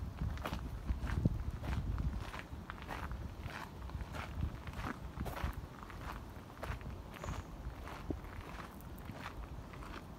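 Footsteps of the person filming, walking at a steady pace of about two steps a second and growing a little fainter toward the end, over a low rumble on the microphone.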